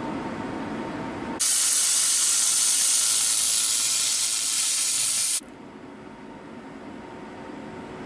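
Handheld fiber laser welder firing on a metal sheet at 550 W peak power with the beam wobbling in a 3.2 mm line. It makes a loud, steady hiss that starts abruptly about a second and a half in and cuts off about four seconds later.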